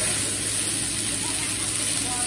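Chopped vegetables sizzling on a hot teppanyaki griddle while oil burns in flames over them, a steady hiss with no distinct breaks.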